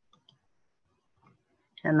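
Near silence with a few faint, short clicks in the first second and a half, then a voice starts speaking just before the end.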